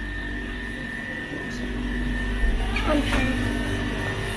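Steady low hum of refrigerated chest freezers with a thin, steady high whine, and faint voices about three seconds in.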